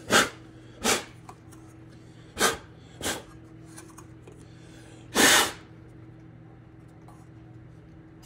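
Five short, sharp puffs of air over a steady low hum. The longest and loudest puff comes about five seconds in.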